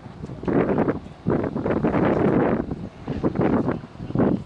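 Wind buffeting the camera microphone: a loud rushing noise that surges and drops in irregular gusts.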